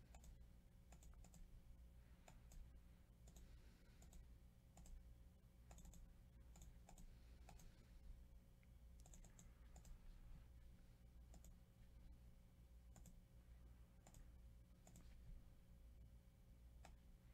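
Faint, irregular clicking of a computer mouse and keyboard keys, roughly one or two clicks a second, some in quick pairs, over a low steady hum.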